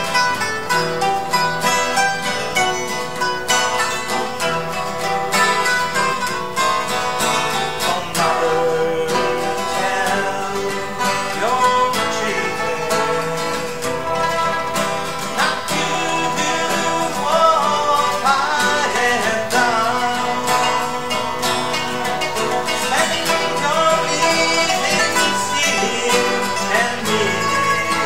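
Live acoustic ensemble of plucked strings: a steel-string acoustic guitar strummed with a long-necked bass lute and a small plucked instrument. A man sings over them, with the voice most prominent from about a third of the way in.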